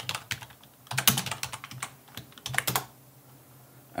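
Typing on a computer keyboard in three short runs of keystrokes, then stopping about a second before the end.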